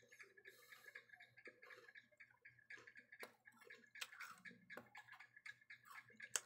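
Near silence with faint, rapid ticking, several ticks a second, and a few louder sharp clicks about three, four and five seconds in.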